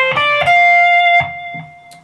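Electric guitar playing the last notes of a D minor 7 arpeggio: a few quick single picked notes, then a held note that rings and fades away from a little past a second in.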